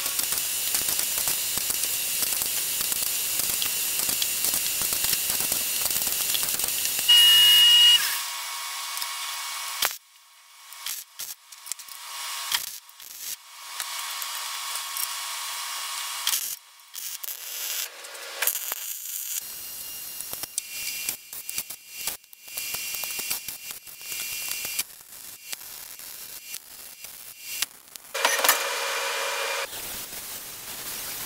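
A run of short edited clips of steel-fabrication shop sounds. A steady hissing tool sound runs for about the first eight seconds, with a brief high tone near its end. Sporadic knocks and patches of tool noise follow, and near the end comes a louder stretch where an angle grinder grinds a weld on square steel tubing.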